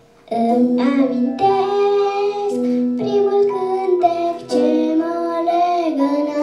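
A young girl singing into a handheld microphone over instrumental accompaniment, her voice coming in just after the start, with a brief pause about four and a half seconds in.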